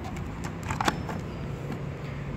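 Handling noise: a few short clicks and taps close together, between about half a second and a second in, over a steady low background hum.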